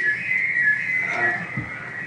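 A steady, high, slightly wavering whistle of audio feedback. It comes from a loop between the room's microphones and the video-call audio, the same setup that is causing the echo.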